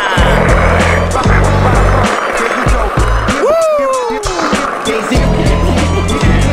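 Skateboard wheels rolling over stone paving, under a hip-hop track with a heavy bass beat. A long swooping tone falls in pitch about three and a half seconds in.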